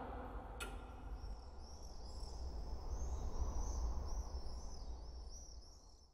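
Faint quiet ambience: a low steady rumble with small birds chirping repeatedly, high and thin, from about a second and a half in, fading out just before the end. A single sharp click comes just after the start.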